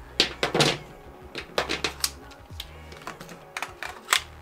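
Handling noise from firearms gear: a string of sharp, irregular clicks and clacks as a pistol magazine and an AR pistol are handled and set against a glass tabletop, with a low rumble that comes and goes.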